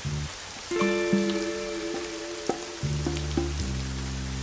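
Steady rain with background music over it: sustained notes over a low bass line that changes a few times.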